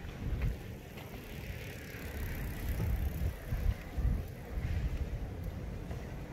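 Outdoor street ambience recorded while walking, dominated by an irregular low rumble and thumps on the microphone, with a faint hiss swelling in the middle.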